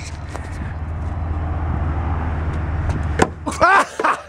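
Low, steady rumble of a motor vehicle that slowly grows louder over about three seconds, then a sharp knock.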